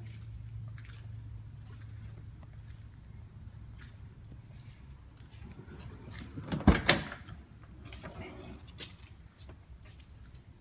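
Honda Civic hatchback's driver door being unlatched and pulled open: two sharp clicks of the handle and latch in quick succession a little past halfway, the loudest sounds here. A low steady hum and a few faint knocks run underneath.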